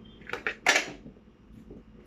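Metal kitchenware handled: a few light clinks, then a louder, longer metallic rattle about two-thirds of a second in, as a metal coffee tin and spoon are handled.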